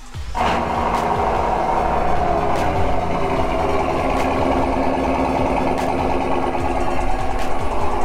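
The 6.2-litre V8 of a GMC Sierra AT4 cold-starting through a Corsa cat-back exhaust: it fires suddenly about a third of a second in and runs loud and steady.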